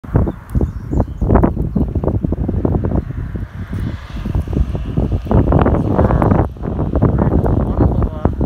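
Wind buffeting a phone microphone in loud, uneven gusts.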